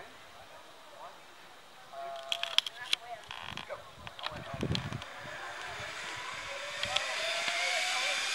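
Zip line trolley pulley running along its steel cable as a rider sets off: a hiss with a thin whine that rises steadily in pitch and grows louder as the rider picks up speed. Before it, a few seconds of sharp metallic clicks and clinks from the clip-in gear at launch.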